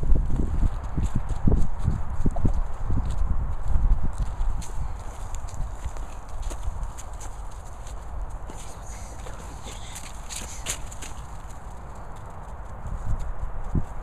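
Irregular low thumps and rustling from a handheld camera being carried over grass, with footsteps. The sound quietens about five seconds in, leaving faint scattered clicks, and the thumps pick up again near the end.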